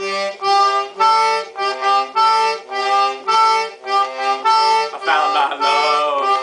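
Toy concertina playing an instrumental vamp: reedy sustained chords, about two a second, alternating between two chords as the bellows are pushed and pulled.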